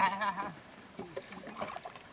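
A wavering vocal cry trails off in the first half second, then a wooden paddle dips and sloshes in shallow, muddy water as a small plastic boat is paddled.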